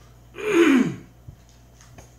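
A man clearing his throat once, about half a second in: a short, loud, raspy sound whose pitch falls.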